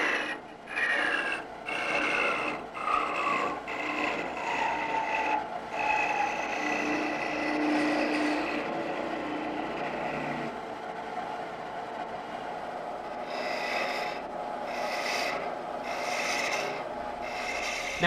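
Parting tool cutting into spinning wood on a lathe: a steady scraping with a whistling tone that slowly falls in pitch. About ten seconds in the sound changes, and near the end a lathe tool cuts the next piece in passes about once a second.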